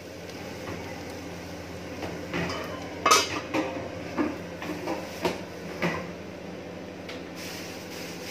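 Stainless steel lid and pans clinking and knocking on a gas stovetop, a handful of sharp metal knocks with the loudest about three seconds in, over a steady low hum.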